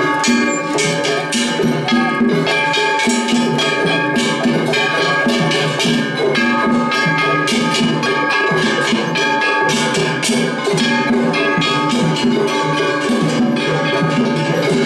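A Kumagaya Uchiwa Festival float's hayashi band playing loudly: large brass hand-held gongs (kane) are struck in a fast, unbroken stream of ringing strokes over a driving drum rhythm.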